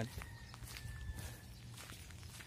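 Faint footsteps of people walking on a rough paved road.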